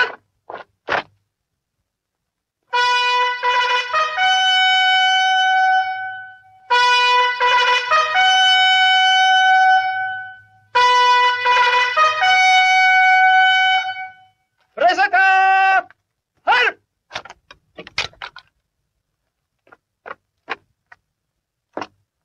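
Military bugle call: the same phrase sounded three times, each a lower note stepping up to a longer held higher note, then one shorter phrase.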